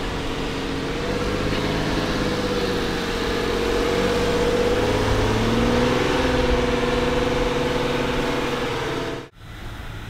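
Jeep Wrangler's engine working under load as it crawls up steep slickrock, its pitch rising a little in the middle. About nine seconds in the sound cuts off abruptly and gives way to a quieter, steady engine sound.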